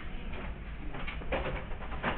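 Paper handling on a desk: a pen stroke and a worksheet sliding and rustling, in a few short scrapes near the end, over a low steady hum.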